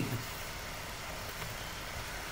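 Steady background hiss with a faint low hum: the room and microphone noise under a narrated screen recording, with no distinct event. A spoken syllable ends right at the start.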